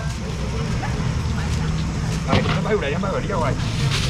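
Chatter of customers' and sellers' voices at a busy outdoor seafood auction stall, with a louder stretch of talk after about two seconds, over a steady low hum.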